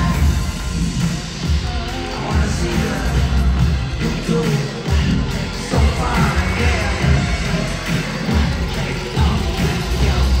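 Loud live pop music over an arena sound system, driven by a heavy, pulsing bass beat.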